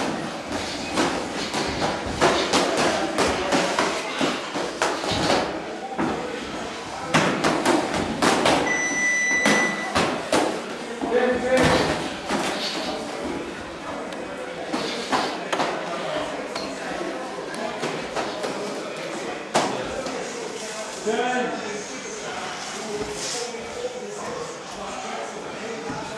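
Gloved punches and kicks landing in a sparring bout: repeated short thuds and slaps among people's voices. A brief steady tone sounds once, about nine seconds in.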